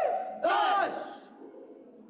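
A small group of men shouting together in a hands-in huddle cheer: a shout cut off at the very start, then a second short unison shout about half a second in, trailing off in the room.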